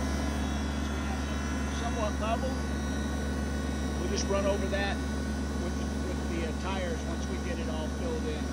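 Kubota BX23S subcompact tractor's three-cylinder diesel engine idling steadily, with a few faint words from a man's voice over it.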